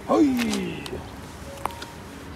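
A person's drawn-out vocal sound, falling steadily in pitch over less than a second, followed by a short click.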